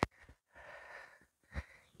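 Faint breathing of a woman exerting herself through a dumbbell lunge, a soft breath about half a second in, followed by a short soft thump near the end.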